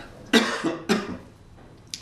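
A man coughing into his hand: three short coughs within the first second, the first the loudest.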